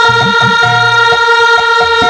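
Kirtan accompaniment: one steady, reedy note held without wavering for the whole stretch, over a pattern of drum strokes.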